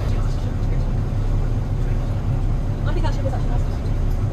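Tender boat's engine running under way, a steady low drone heard from on board, with faint voices in the background.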